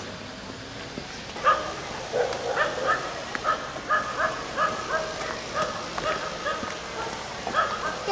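A dog barking over and over in short, quick barks, about two or three a second, starting about a second and a half in.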